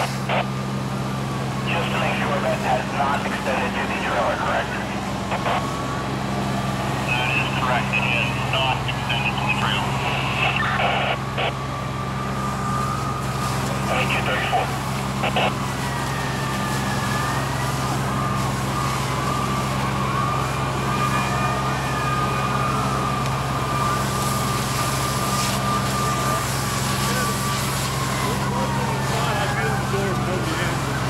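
A fire engine runs steadily with a low, even hum while its hose line flows water onto a car fire. A siren wails slowly up and down in the distance from about halfway on, and indistinct voices and a few knocks come in the first half.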